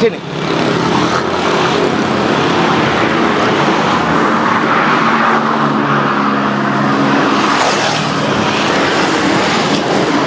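A heavy truck's engine running steadily close by, over the noise of road traffic.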